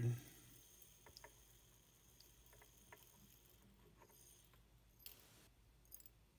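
Faint, sparse ticks of stick rifle-powder kernels dropping from a 50 BMG cartridge case into the stainless pan of an RCBS ChargeMaster scale, with a brief rustling pour about five seconds in.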